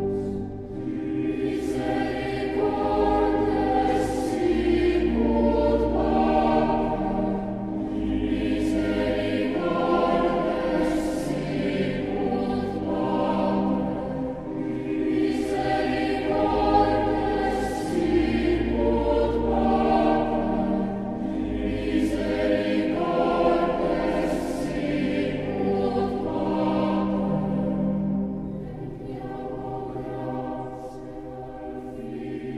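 Background music: a choir singing a slow sacred piece in long held notes, with sustained low bass notes underneath.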